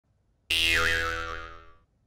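A cartoon 'boing' sound effect: a springy tone starting suddenly about half a second in, its pitch wobbling as it fades out over about a second and a half.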